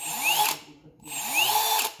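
Milwaukee M18 FPD2 Gen3 brushless cordless combi drill run free with a 10.2 mm bit in the chuck, in two short trigger pulls. Each time the motor spins up with a rising whine and stops again. The drill shows a bit of lag in responding, now that it has already cut out under load once.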